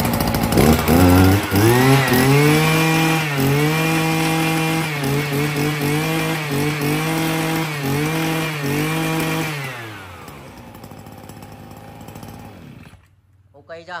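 TJ53-type two-stroke brush cutter engine with a 44 mm bore, pull-started and catching about a second in. It is then revved hard several times with short throttle dips, winds down about ten seconds in, and goes quiet near the end.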